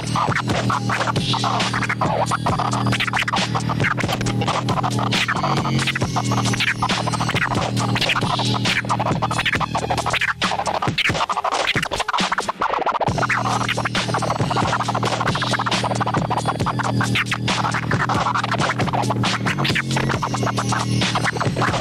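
A vinyl record is scratched on a turntable over a hip-hop beat: quick back-and-forth scratch strokes chopped by the mixer's crossfader. About halfway through, the beat's bass drops out for a couple of seconds while the scratching continues.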